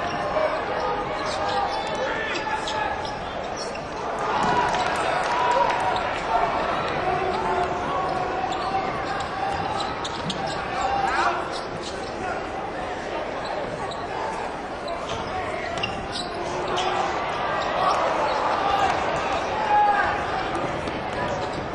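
Basketball game in an arena: a basketball bouncing on the hardwood court over the steady chatter of a crowd, which swells a little twice.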